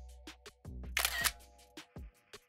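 Background music with a clicking beat and held notes; about a second in, a camera shutter sound effect snaps as the CV photo is taken.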